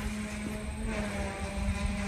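A steady, even-pitched engine drone from a motor, with a low uneven rumble underneath.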